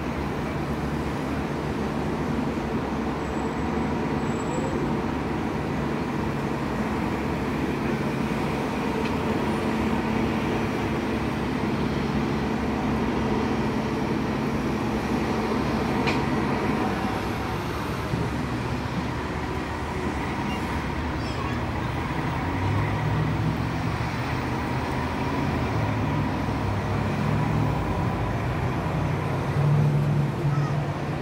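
Steady street traffic and idling vehicle engines, a constant low hum under road noise, with a heavier engine drone building in the last several seconds.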